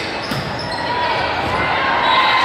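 Indoor volleyball rally in a gymnasium: a sharp ball contact about a third of a second in, over the echoing hall with players' and spectators' voices calling out.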